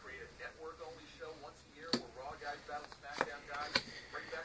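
Paper trading cards being handled and dealt from a stack, with three sharp card clicks in the second half, under a faint low voice.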